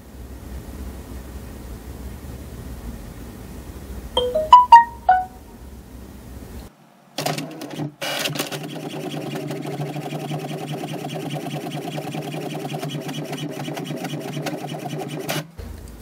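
HP Smart Tank 580-series ink tank printer printing a page: a short electronic chime of several stepped beeps about four seconds in, a few clunks as the paper is picked up, then the steady whirring and fine rapid ticking of the print mechanism and paper feed, stopping just before the end as the printed page comes out.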